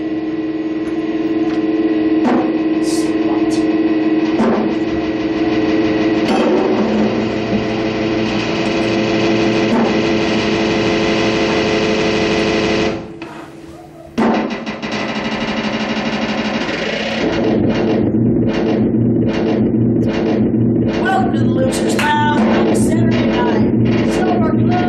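Live drum kit playing freely over a dense, sustained droning tone. At first there are only sparse hits, then there is a sudden brief drop about halfway through, and the drumming becomes rapid and busy for the last third.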